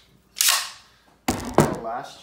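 A pneumatic 18-gauge brad nailer: a short hiss of compressed air about half a second in, then one sharp shot from the nailer a little after a second in.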